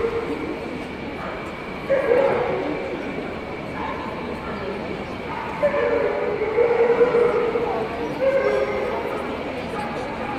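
A dog barking and yipping, in a short burst about two seconds in and again through the middle of the stretch into its later part, over background chatter.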